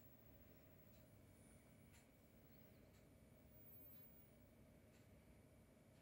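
Near silence: faint room tone, with faint ticks about once a second.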